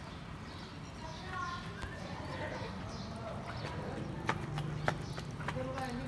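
Faint, indistinct voices with a few sharp clicks in the second half.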